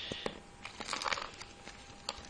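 Plastic packaging and bubble wrap crinkling as they are handled, with a cluster of sharp crackles about a second in.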